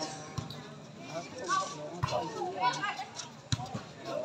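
Shouts and calls from players and onlookers during a volleyball rally, with about three sharp smacks of the ball being struck, about half a second in, two seconds in and three and a half seconds in.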